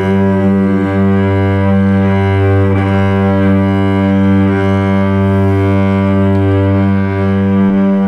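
Solo cello bowed in long, sustained low notes, the low pitch held steadily with its overtones ringing above.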